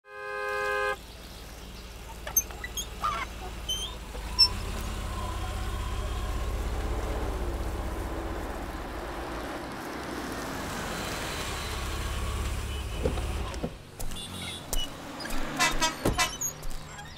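A short chime-like tone, then a motor vehicle running with a steady low rumble that swells and fades over several seconds. A few sharp clicks come between about two and four and a half seconds in. The rumble breaks off shortly before the end.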